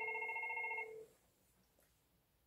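FortiFone 475 IP desk phone ringing for an incoming call: one burst of electronic ringtone about a second long, stopping about a second in.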